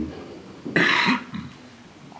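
A man's single loud cough close to a handheld microphone, about a second in, followed by a fainter catch of breath.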